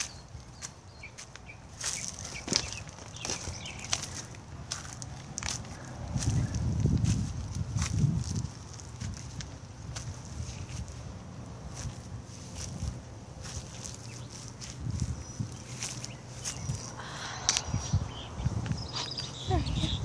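Footsteps and handling rustle from a hand-held phone as a person walks across a yard, with scattered sharp clicks and a few low thumps, heaviest about a third of the way in.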